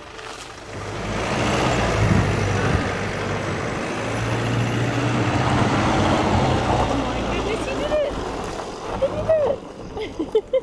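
Mercedes-Benz Sprinter van driving slowly over grass: its engine running steadily with tyre and grass noise, growing louder about a second in as it comes past.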